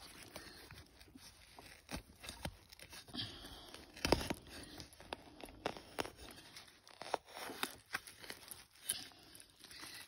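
Faint, irregular rustling, crackling and crunching of dry grass, leaf litter and soil around a dug hole as a pinpointer probe is worked through it, with a sharper crunch about four seconds in.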